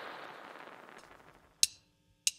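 The tail of a whooshing noise swell from the logo animation fades out over the first second or so. After near silence, one sharp click comes about one and a half seconds in.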